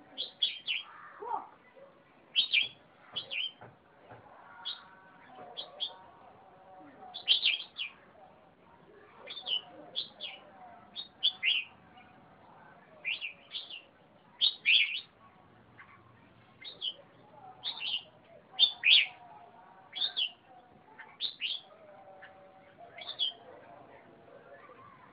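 Caged red-whiskered bulbul singing: short, bright whistled notes in quick phrases, one or two every second, with brief pauses between.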